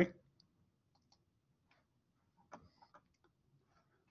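A few faint computer mouse clicks in a quiet room, the most distinct one about two and a half seconds in.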